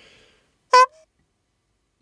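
A single brief, bright, buzzy tone, like a short honk, lasting well under a quarter of a second about three-quarters of a second in, with a faint lower tone just after it and silence all around.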